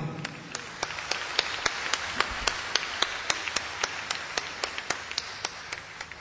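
Audience applauding: a steady patter of many hands, with sharp, evenly timed claps at about three to four a second standing out above it, thinning toward the end.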